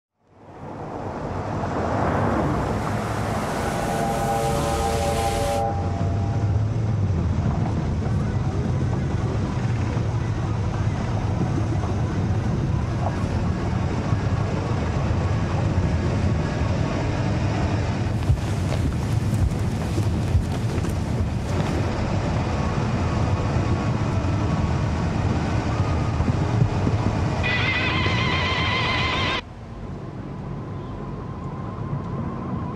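Film score and sound design: a deep, steady rumbling drone that fades in over the first two seconds, with brief pitched notes rising over it twice. It cuts off suddenly near the end.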